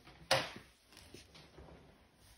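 A single sharp knock about a third of a second in as a plastic face shield is dropped into a plastic crate, followed by faint rustling and small taps.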